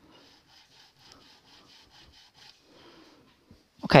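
Nut file rasping back and forth in a bass guitar's nut slot, a faint run of quick scraping strokes, about four a second, that stops shortly before the end. The slot is being filed deeper to lower the string's height at the nut.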